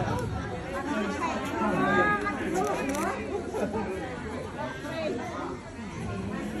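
People talking and chatting, several voices overlapping.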